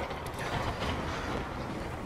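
Vertically sliding lecture-hall blackboard panels being pushed along their tracks: a steady rolling rumble with no distinct knocks.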